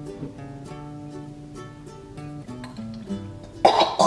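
Light background ukulele music with plucked notes. Near the end, a person coughs loudly into a bowl in disgust at the baby food.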